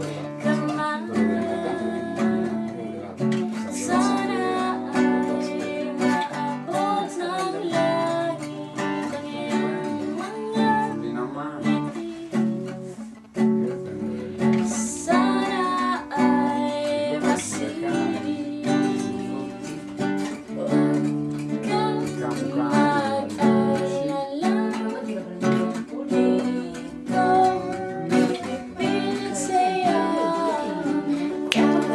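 A woman singing to a strummed acoustic guitar.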